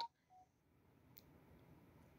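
Near silence: faint room tone, with one faint tick about a second in.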